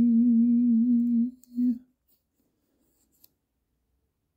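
A man singing unaccompanied, holding one long low note for about a second and a half, then a short second note, followed by silence.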